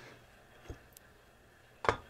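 Quiet room tone broken by a few faint knocks and clicks as a hand bait injector is worked in a metal pot of melted soft-plastic and lifted out: a soft knock a little after the start and a sharper click near the end.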